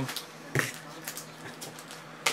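A single sharp click about half a second in, followed by a few faint ticks over low room hiss.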